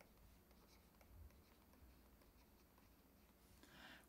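Near silence: faint scratching and light taps of a digital pen writing on a screen, over a low, steady hum.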